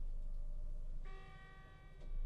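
Low steady hum inside a moving lift car, then about a second in a single held electronic tone with a chime-like ring lasts about a second as the hum fades.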